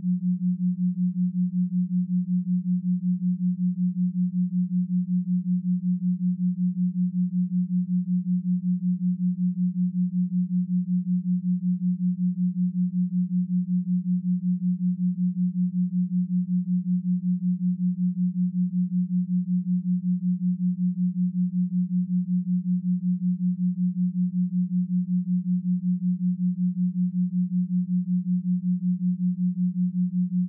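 Binaural-beat tone: a steady, pure, low tone near 180 Hz. It pulses evenly several times a second, where the two slightly detuned tones beat against each other.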